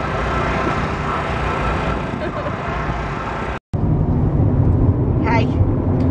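Steady outdoor noise aboard a boat, with faint distant voices. After an abrupt cut it becomes the louder low rumble of road noise inside a moving car, with a voice heard briefly near the end.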